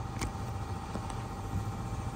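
A low, steady engine hum, with one faint click about a quarter second in.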